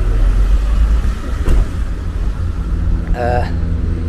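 Low, steady rumble of a motor vehicle's engine running close by, with a steadier hum settling in about two-thirds of the way through.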